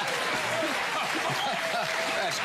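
Studio audience applauding, a steady patter of clapping with a man's voice through it.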